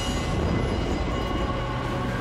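Steady, loud rumbling sound effect for a summoned lightning storm, with dramatic music faintly beneath it.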